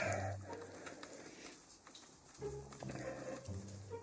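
A man humming softly and low in the second half, otherwise quiet.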